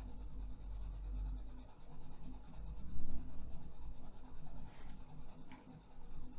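Caran d'Ache Luminance 801 Buff Titanium coloured pencil shading back and forth on paper, a soft, uneven scratching with a louder stretch about three seconds in.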